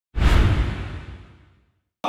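An edited whoosh sound effect with a deep low end, starting suddenly just after the start and fading away over about a second and a half.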